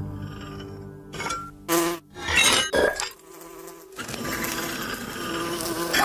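Buzzing like a flying fly's, coming in several short passes in the first few seconds, then a steadier buzz over the last two seconds.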